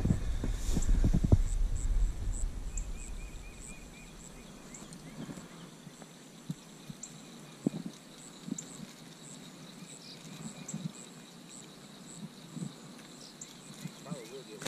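Quiet outdoor background with a faint high-pitched chirp repeating about every half-second, and scattered soft clicks and taps from handling fishing line and rod. Low rumbling handling noise on the microphone in the first two seconds.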